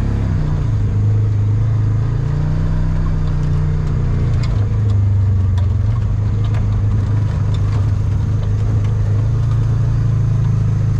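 Side-by-side utility vehicle's engine running as it drives through tall grass, heard from inside the enclosed cab. The engine note rises in pitch a second or two in, drops back a little before halfway and then holds steady, with scattered light knocks and rattles.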